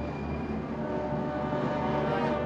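Orchestral film score with sustained brass chords.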